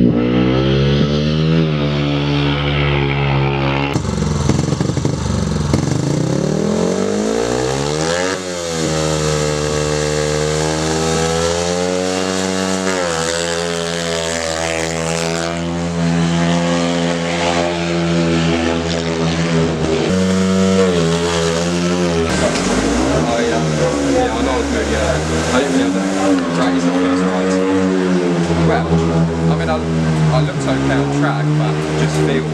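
Speedway motorcycle's single-cylinder engine revving as it laps the track, its pitch rising and falling, with a sharp sweep in pitch about eight seconds in as the bike passes.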